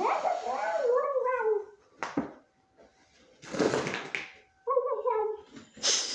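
Dog-like whimpering and whining made by a person in a dog fursuit: a run of rising and falling whines, a sharp click, a papery rustle, then a second shorter bout of whines.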